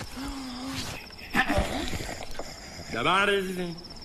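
Crickets chirping steadily as night-time ambience. Over it come a short pitched hum in the first second and a louder, rising voice-like call about three seconds in.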